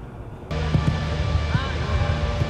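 Quiet room tone, then, about half a second in, a sudden change to a steady low mechanical hum with scattered knocks and a couple of short rising-and-falling chirps.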